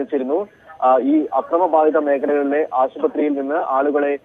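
Speech only: a news reporter's voice narrating continuously, with no other sound standing out.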